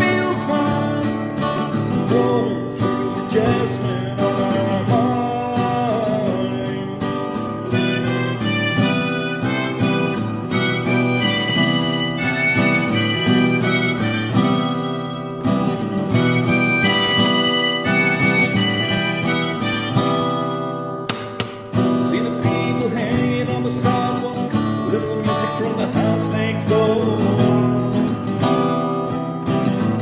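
Strummed acoustic guitar with a harmonica playing an instrumental break over it. The harmonica climbs into a higher, brighter part in the middle and stops about two-thirds of the way through, leaving the guitar.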